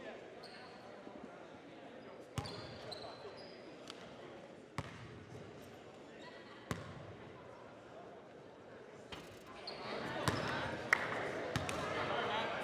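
Basketball bounced on a hardwood gym floor: a few single, sharp bounces about two seconds apart, echoing in the hall. Background voices, which grow louder near the end.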